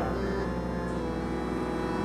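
Soft, steady background music of held drone-like tones, with a low electrical hum beneath.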